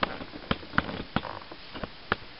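Light, irregular clicks and taps, about four a second, from hands handling a cardboard toy box with a plastic window.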